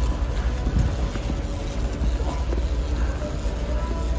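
Big-box store ambience: a steady low rumble with faint music in the background.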